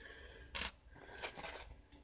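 A small plastic parts bag crinkling and rustling in the hands, with a short rustle about half a second in and softer rustling after it.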